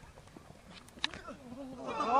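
Footballers shouting on an open pitch, faint at first and building near the end, with one sharp knock about halfway through as the ball is struck in the goalmouth.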